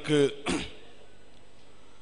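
A man's voice trails off, then a short throat clearing about half a second in, followed by a pause with only a steady faint hiss.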